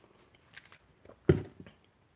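A man drinking from a glass: faint small swallowing sounds, then one short, louder sound a little past a second in.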